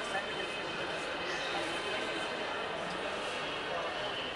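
Indistinct background chatter of people talking in a terminal hall, at a steady level, with no single voice standing out.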